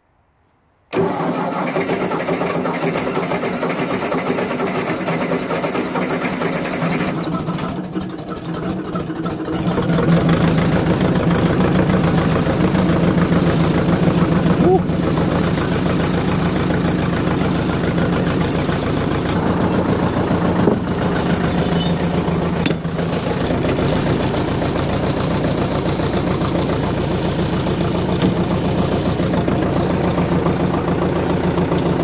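Ford 861 Diesel tractor's freshly rebuilt four-cylinder diesel engine being started. It turns over on the starter from about a second in, catches after several seconds, and runs steadily at idle from about ten seconds in.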